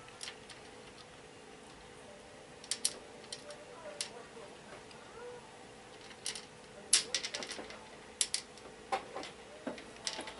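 Aquarium gravel and small pebbles clicking against each other as a hand pushes plant roots down into them: scattered, irregular clicks, a few at a time, the loudest about seven seconds in.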